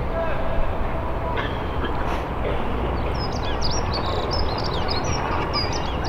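Outdoor ambience between gun shots: indistinct murmur of onlookers' voices with birds chirping, the high chirps thickening from about three seconds in. No gun fires.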